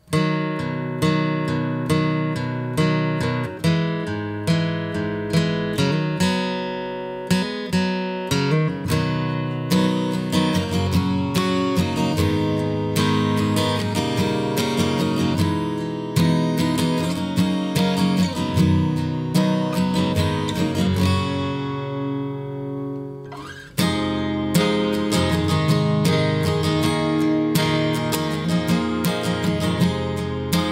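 Gibson SJ-200 Studio super-jumbo acoustic guitar, walnut back and sides, strummed in steady rhythmic chords with plenty of bass. Late on, one chord is left to ring and die away for about two seconds, then the strumming starts again.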